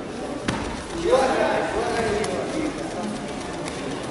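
Voices shouting in a large hall, with a single sharp smack about half a second in and a fainter click a little past two seconds.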